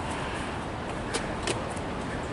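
Steady rushing outdoor background noise, with two short taps close together just past a second in.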